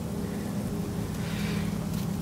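A steady low machine hum over a faint background hiss.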